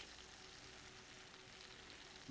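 Near silence: a faint steady hiss with a faint steady tone under it.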